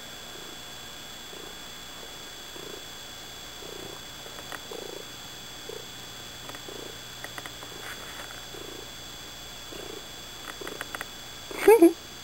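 Domestic cat purring while kneading, the purr swelling softly in an even rhythm of breaths, with a few faint clicks. A short, louder pitched sound comes just before the end.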